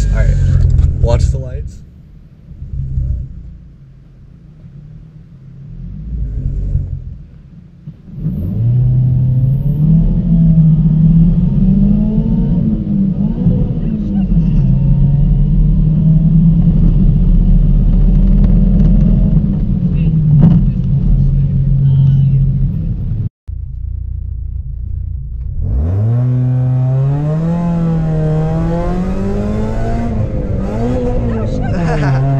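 Supercharged car's engine heard from inside the cabin, idling low at first, then accelerating hard from about eight seconds in. Its pitch climbs, falls back at each manual gear shift and climbs again. After a brief break near the end, another run starts with the engine pitch rising steadily.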